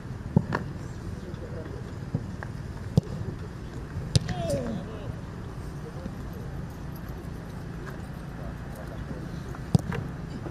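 Sharp thuds of a football being kicked and caught, about six over the stretch, the loudest about half a second in and just before the end. A steady low rumble lies beneath, with a brief distant voice about four seconds in.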